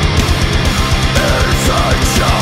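Heavy metal song: loud distorted band with fast, even low drum beats and a high melodic line bending up and down in pitch.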